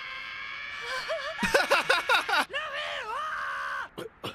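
A young woman's voice from the anime soundtrack speaking in strained, high-pitched, wavering phrases, over a steady high tone that fades out in the first second.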